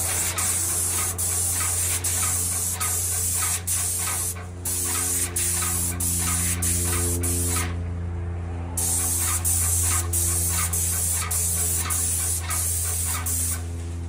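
Airless paint sprayer gun hissing as it sprays a fan of paint onto a ceiling, over a steady low hum with regular ticks about twice a second from the pump. The spray cuts off briefly about four and a half seconds in, again for about a second near the middle, and stops shortly before the end.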